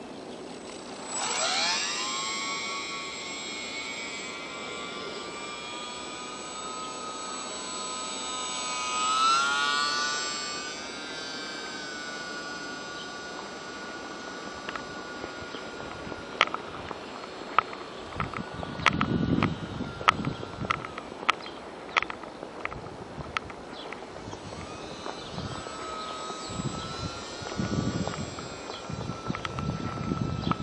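Electric motor and propeller of a micro brushless RC J-3 Cub plane whining in flight. The pitch rises sharply as the throttle opens about a second in, swells and wavers around ten seconds, then holds steady as the plane cruises. In the second half, a run of sharp clicks and crunches sounds under the whine.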